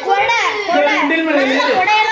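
Only speech: a child talking loudly, with other children around.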